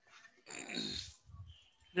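A brief non-word vocal sound from a person, about half a second long near the middle, followed by a fainter low murmur.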